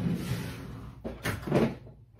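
Rummaging and handling noise as items are pulled out from storage beside a chair: a few short knocks about a second in and the loudest bump at about a second and a half.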